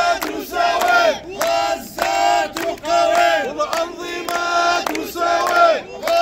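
A group of men chanting together in Arabic in short, rhythmic phrases, about one a second.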